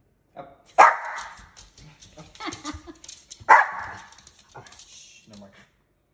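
Small Pomeranian dog barking twice, sharp barks about three seconds apart, begging for food held above her.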